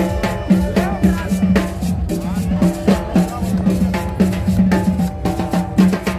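A live street band playing an upbeat dance tune on upright bass, guitar and percussion, with a steady, quick, even beat.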